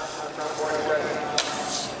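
A snowboard sliding over packed snow, a steady hiss, with one sharp click about one and a half seconds in.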